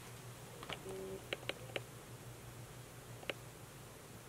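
About five faint, sharp clicks spread across a quiet room, with a brief low hum about a second in.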